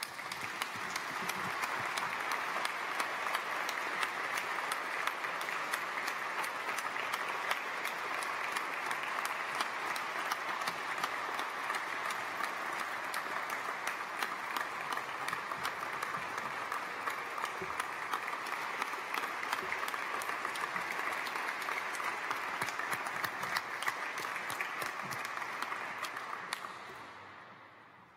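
Audience applauding steadily, the clapping dying away over the last two seconds or so.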